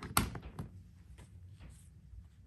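A power cord's plug pushed into an outlet on a plastic power strip: one sharp thunk about a fifth of a second in, then a couple of faint clicks.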